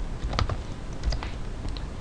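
Typing on a computer keyboard: about half a dozen separate keystrokes at an unhurried pace as a date is entered.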